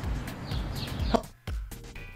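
Sound track of a video clip previewing in editing software: a stretch of noisy hiss with a few brief high chirps and a short tone just after a second in, over low music beats.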